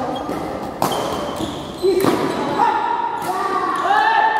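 Two sharp racket strikes on a badminton shuttlecock about a second apart, echoing in a large hall, followed by players' voices calling out as the rally ends.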